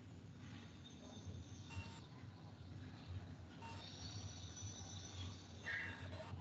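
Faint background hum and hiss picked up by an open video-call microphone, with a few soft clicks and a faint high-pitched tone lasting about a second and a half in the second half.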